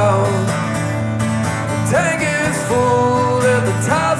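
Live solo performance of a country-style song: a strummed acoustic guitar with a male voice singing, holding long notes.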